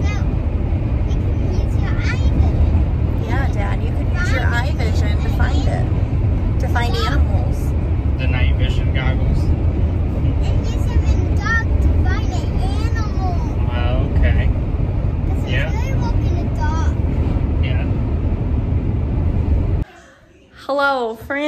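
Steady road and engine rumble inside the cabin of a moving 12-passenger Chevy Express 3500 van, with children's voices chattering now and then over it.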